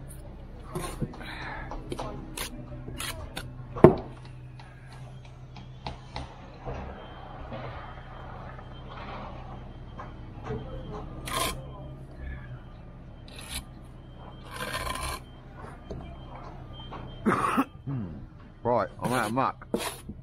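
Bricklaying work sounds: short scrapes and taps of a steel trowel on mortar and brick, with a single sharp knock about four seconds in, over a steady low hum. Voices come in near the end.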